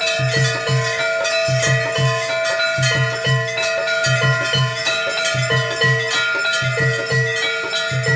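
Temple aarti music: bells struck rapidly and ringing continuously over a steady held drone, with a low drum beating in a repeating pattern.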